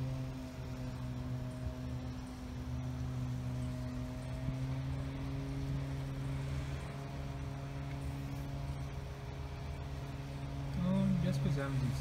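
Steady machine hum with a low tone and its overtones, unchanging throughout; a voice begins near the end.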